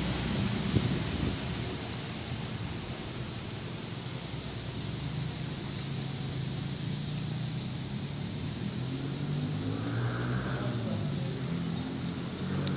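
Vehicle traffic on the road bridge: a steady low engine hum under a noisy wash, with a single small click about a second in.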